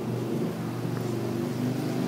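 A motor vehicle engine running steadily at low revs, a low hum whose pitch shifts slightly partway through.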